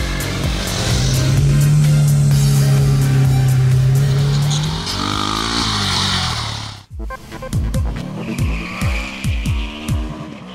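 Single-cylinder supermoto motorcycle engines revving and passing, mixed with background music that has a steady beat. The sound cuts out briefly about seven seconds in.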